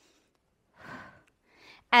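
Two short breaths from a woman straining through a set of exercises. The first, a soft exhale, comes about three quarters of a second in; the second is fainter and comes near the end.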